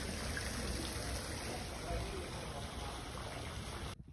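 Steady outdoor rushing noise with faint voices of people in the background.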